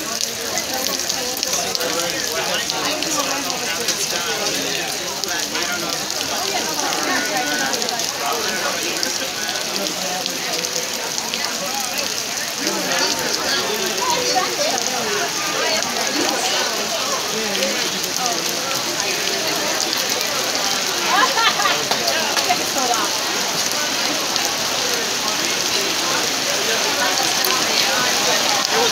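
Heavy rain falling steadily in a downpour, an even hiss throughout.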